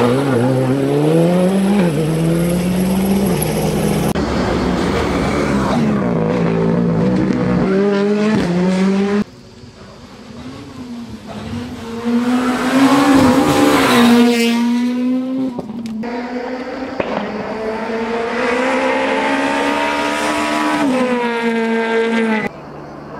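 Rally cars at full throttle on a tarmac stage. First a Škoda Fabia R5's turbocharged four-cylinder revs up and drops at each gear change as it drives out of a hairpin. After a sudden cut, another rally car approaches and passes loudly, about five seconds later, and then a further car is heard running hard.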